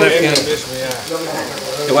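Vegetables sizzling as they stir-fry in a hot steel wok over a gas burner, turned with a wooden spatula.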